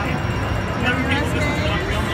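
Busy slot-machine floor ambience: people talking in the background, with a voice rising clearly about a second in, and slot machine music over a steady low hum of the hall.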